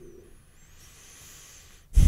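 A faint breath drawn in at a microphone in a pause between speech, heard as a soft hiss through the second half.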